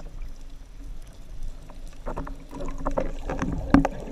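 Muffled underwater sound heard through a camera housing: a low water rumble with scattered clicks and knocks. It grows busier and louder in the second half, with one sharp knock shortly before the end.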